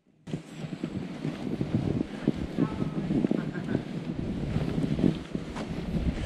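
Noise of a fat bike being ridden on a snowy trail: wind rushing over the handlebar camera's microphone, mixed with the crackly crunch of the wide tyres in the snow and rattles from the bike. It starts abruptly a moment in.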